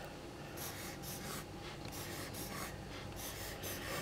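Pencil scratching faintly across thick dot-grid notebook paper in a series of short strokes, drawing small rectangular boxes.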